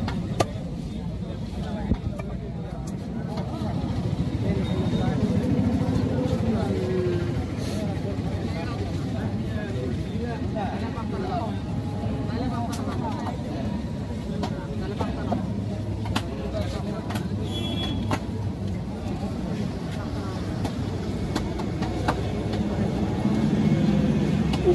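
Outdoor background din: a steady low, engine-like rumble under indistinct background voices, with a few sharp clicks scattered through it.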